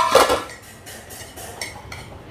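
Metal clatter from a large cooking pot of boiled corn being handled: one loud knock and rattle at the start, then a few light clicks.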